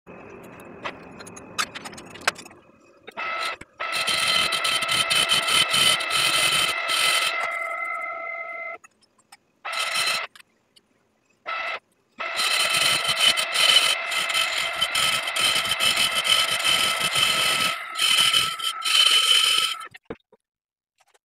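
Metal lathe running with a steady high-pitched whine over a hiss. It cuts out abruptly for about three seconds near the middle, apart from brief bursts, then carries on. The first few seconds are quieter, with a few clicks.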